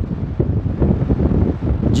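Low, uneven rumble of air buffeting the microphone.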